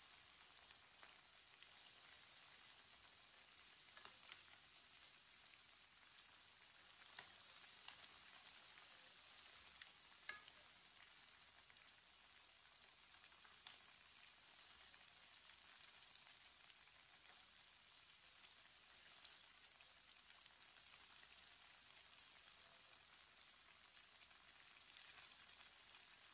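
Cauliflower chapli kababs shallow-frying in hot oil in a pan: a faint, steady sizzle, with a few light clicks of a spoon in the pan as the kababs are turned.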